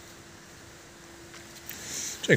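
Quiet outdoor background with a faint steady hum, and a soft rustle of bramble leaves being handled that grows near the end.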